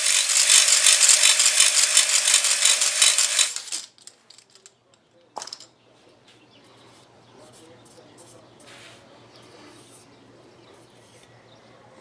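Blade hone spun by a power drill inside a two-stroke cylinder bore: a loud grinding whir with a fast, even chatter, re-scratching the bore so new rings can seat after a light seizure. It stops about four seconds in, followed by quiet handling of the cylinder and a single knock a little after five seconds.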